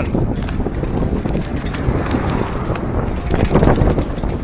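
Wind buffeting the microphone over the rolling rumble and rattle of a Quickie Attitude handbike on a paved path, with scattered short knocks.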